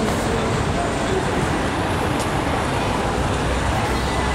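Steady road traffic noise on a busy city street, an even rumble and hiss of passing cars and buses.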